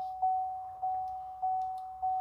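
2018 Chevrolet Tahoe's interior warning chime, dinging at one steady pitch about every 0.6 s, each ding fading before the next, as it does when a front door stands open.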